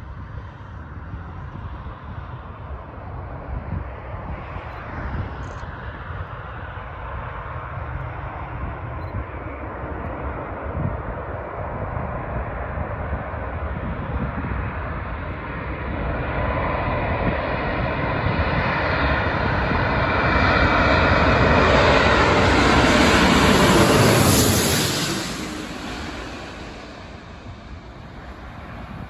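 Four-engined Airbus A340 airliner on final approach, its engine noise building steadily as it comes in low and close, loudest about three-quarters of the way through. It then drops in pitch and fades as the jet passes and heads on toward the runway.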